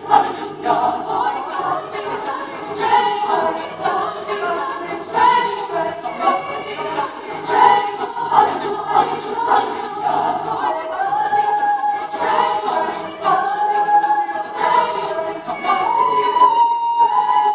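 Mixed choir of male and female voices singing together, with longer held notes in the second half.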